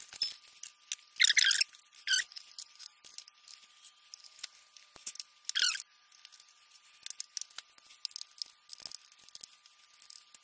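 Wooden reed blocks being handled and set back into a melodeon's body during reassembly: scattered small clicks and knocks, with three short scraping rustles about a second, two seconds and five and a half seconds in.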